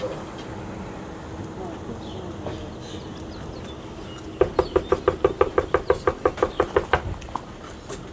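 A fast, even run of knocks on a house's front door, about twenty in under three seconds, starting about halfway through, each knock with a slight ringing tone.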